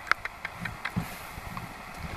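Handling noise: a few light clicks and taps, most of them in the first second, with soft low bumps between.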